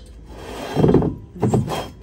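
Two loud bursts of rubbing, scraping handling noise close to the microphone, about a second apart, as a glazed ceramic vase is handled on a shelf.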